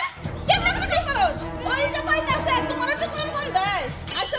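Voices talking over a short stretch of background music that comes in just after the start and fades near the end.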